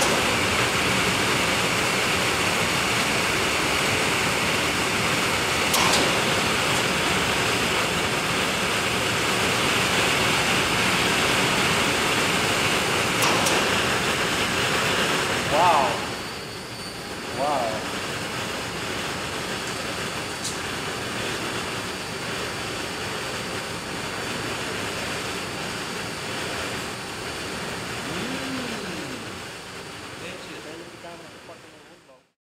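Fan of a home-made tornado machine running, a loud, steady rush of moving air strong enough to suck a sheet up off the table; it drops noticeably in level about halfway through, with a few light clicks along the way.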